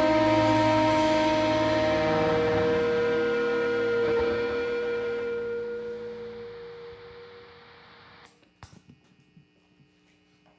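A rock band's last held chord and cymbal wash ring out at the end of a song, fading away over about seven seconds to near silence. A few faint knocks follow near the end.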